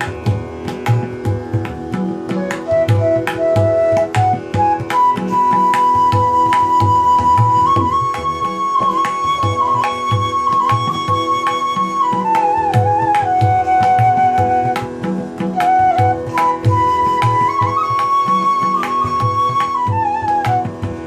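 Bansuri bamboo flute playing a slow melody of long held notes with glides between them, joined by the tabla's hand-played drum strokes in a steady rhythm, over a steady drone. The flute comes in about three seconds in.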